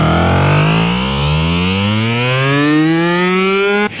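A loud, siren-like tone with many overtones, climbing steadily in pitch for nearly four seconds, its rise slowing toward the top, then cutting off abruptly just before the end.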